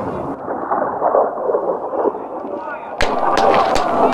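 Men's voices talking in Russian, then about three seconds in a sudden, louder burst of noise with several sharp cracks.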